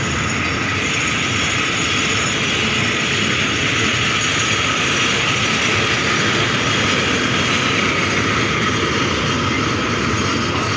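Freight train of tank wagons rolling past at close range: steady, unbroken noise of wagon wheels running on the rails.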